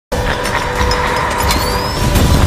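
Film soundtrack mix of cars on a wrecked highway: a dense low rumble with steady held tones over it, and a high whine rising from about three-quarters of the way through.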